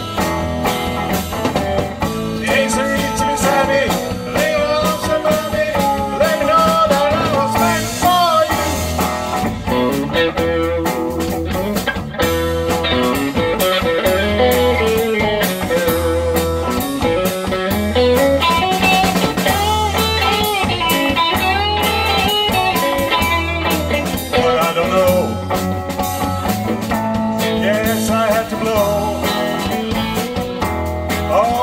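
Live rock band playing an instrumental stretch: a lead electric guitar line with bent notes over bass guitar and drum kit.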